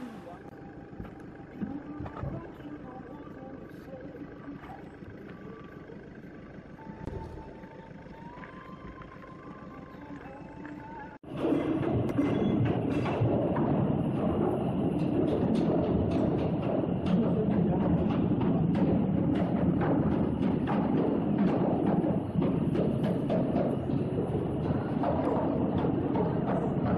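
Cooperage workshop: many overlapping hammer blows as coopers drive metal hoops onto wooden whisky casks, a dense run of knocks that starts suddenly about eleven seconds in. Before it there is a quieter stretch of outdoor background sound.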